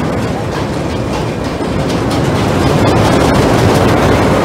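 Fireball looping ride's train running around its giant ring track: a continuous loud rumble of wheels on the steel track with scattered rattling clicks.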